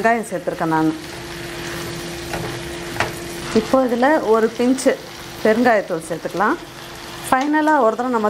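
Chopped tomatoes and dried red chillies sizzling in hot oil in a non-stick kadai as they are stirred with a spatula, one sharp tap about three seconds in.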